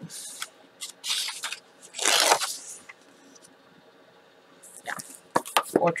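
Sheets of patterned paper and cardstock rustling and sliding against each other as they are handled: two longer swishes in the first few seconds, then a few short taps and rustles near the end.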